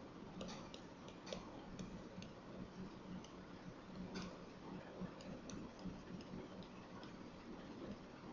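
Faint, irregular clicks and taps of a stylus on a tablet screen during handwriting, over a low steady hum.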